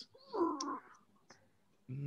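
A single short vocal sound, about half a second long and somewhat muffled, then a faint click.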